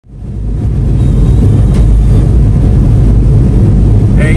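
Steady low rumble of a car driving, heard from inside the cabin: engine and tyre noise on a wet road, fading in over the first half second.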